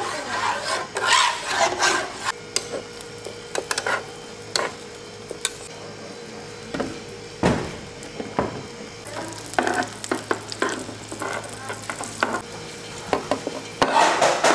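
Plastic spatula scraping and knocking on a hot electric griddle while a Korean egg roll (gyeran-mari) is rolled, over a light sizzle of egg frying in oil. The strokes come irregularly, loudest near the start and about halfway through.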